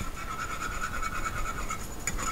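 Wire whisk scraping quickly and evenly around a pan, beating chicken stock into a blonde roux as a velouté sauce comes together.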